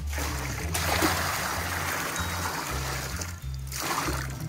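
Dirty water with hay bits being poured out of a plastic horse water bucket, splashing into a tub that already holds water. The pour is loudest about a second in and tails off near the end. Background music with a bass line plays under it.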